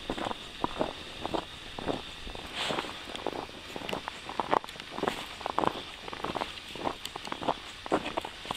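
A hiker's footsteps crunching on a packed snowy trail, about two steps a second, at a steady walking pace.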